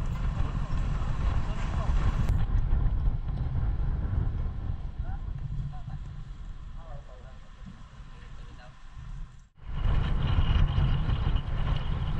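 Wind buffeting an outdoor camera microphone: a rough low rumble, with faint voices behind it. It drops out briefly about nine and a half seconds in, then comes back louder.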